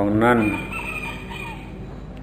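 A rooster crowing faintly: one drawn-out call of about a second, heard just after a man's voice trails off.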